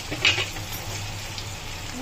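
Peas and capsicum sizzling steadily in hot oil in a kadhai on a gas burner, with a brief scrape of the spatula against the pan near the start.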